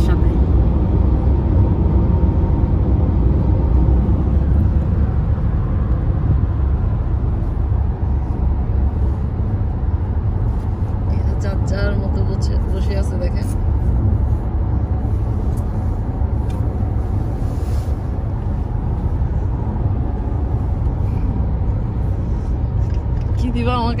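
Steady road and engine noise heard inside a car's cabin while driving at highway speed, a low, even rumble.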